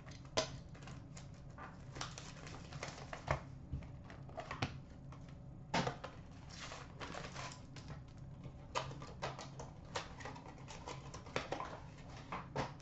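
Cardboard trading-card hobby box being opened by hand and its packs of cards taken out and set down: a run of light rustles, scrapes and taps, with a few sharper knocks.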